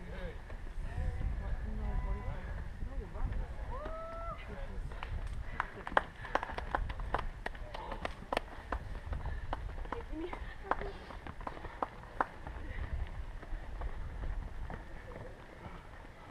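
Runners' footsteps on a rocky dirt trail: a quick series of sharp clicks and scuffs of shoes on rock and roots, thickest in the middle of the stretch, with indistinct voices in the background.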